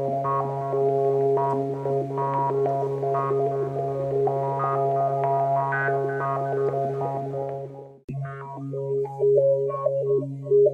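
Synthesizer music: a held low drone under a line of shifting notes, which fades out about eight seconds in. A new pattern of short, stepping synth notes then starts over a steady low tone.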